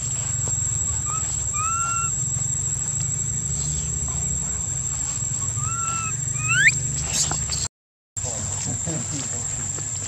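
Baby long-tailed macaque giving short, high squeaky calls in two pairs about four seconds apart, the last one sweeping up in pitch. Behind it run a steady low rumble and a constant high thin whine, and the sound drops out completely for a moment near the end.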